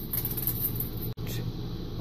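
Steady low background hum with faint light handling sounds of hands picking up a small plastic bag and thin metal chains from a metal tray.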